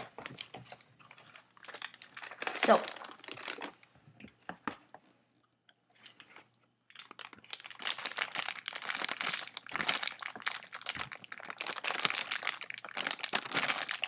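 A food wrapper crinkling as it is handled and rummaged through, a food item being got out of its packaging. There is a short burst about two seconds in, then a dense, continuous run of crackles from about halfway through.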